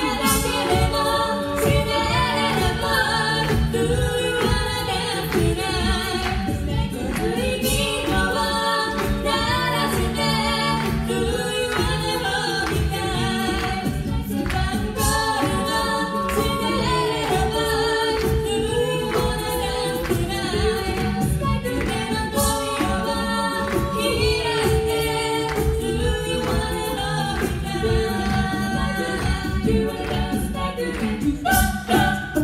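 Female a cappella group of six voices singing a song live into handheld microphones, several parts in harmony over a steady beat.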